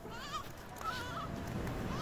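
Several short, wavering animal calls at different pitches, one after another, over a low rumble.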